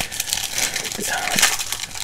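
Foil wrapper of a Pokémon Lost Origin booster pack crinkling with dense irregular crackles as it is torn open by hand.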